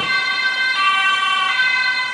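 Ambulance two-tone siren alternating between a high and a low pitch about every three-quarters of a second: an ambulance driving off on an urgent A1 call with its siren on.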